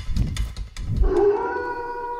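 The last low beats of drum-led music, then about a second in a wolf howl begins: one long call held at a steady pitch.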